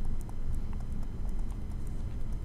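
Stylus tapping and scratching on a tablet screen while writing by hand: irregular light clicks over a steady low rumble.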